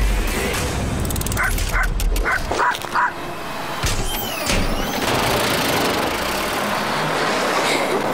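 Small dog barking in a quick run of about five yaps, over background music.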